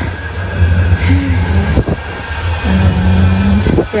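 Manchester Metrolink tram, a Bombardier M5000, pulling into the platform: a low rumble with a steady low hum that swells for about a second in the second half.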